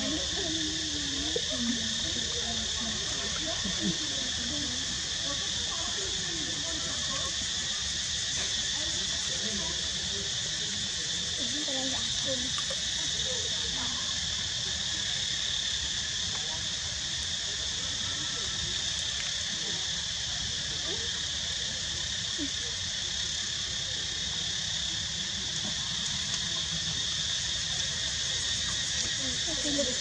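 Steady, continuous insect chorus, a high even drone that does not let up, with faint voices in the background.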